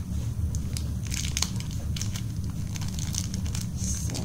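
Plastic toy packaging crinkling and crackling as it is handled and opened, over a steady low rumble.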